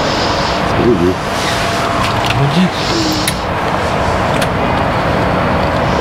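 UAZ 'Bukhanka' van's starter motor cranking the engine steadily without it catching, run off a booster because the van's battery is too weak to start it.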